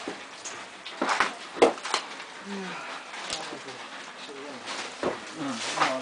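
Two sharp knocks close together about a second in, followed by low, quiet voices talking in a room.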